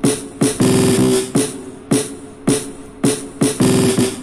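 Programmed intro drum pattern of a hip-hop beat playing back: sharp, pitched tapping drum hits about two a second, with a fast drum roll about half a second in and again near the end.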